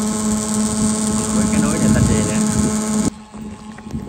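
Shrimp-pond paddlewheel aerators running: a steady motor hum with splashing water, stopping abruptly about three seconds in.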